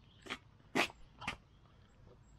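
Puppy making three short vocal sounds about half a second apart, the middle one loudest, while being petted.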